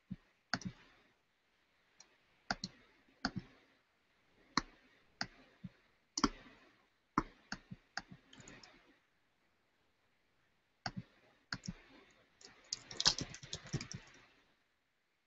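Sharp clicks at a computer, coming irregularly about every half second, with a pause of about two seconds past the middle and a quick, dense run of clicks near the end.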